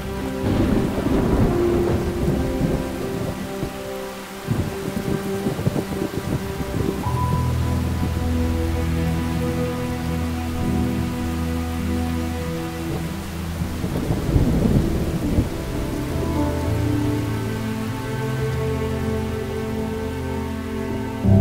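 Rain with thunder rumbling twice, once in the first few seconds and again about three-quarters of the way through, over low, steady held tones.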